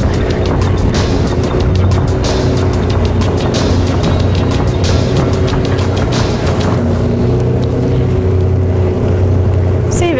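Background music over the steady drone of a motorboat engine running underway.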